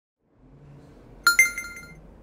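Two-note electronic notification chime, like a new-email alert. It sounds about a second in as two bright tones a tenth of a second apart, the second higher, ringing out briefly over faint room tone.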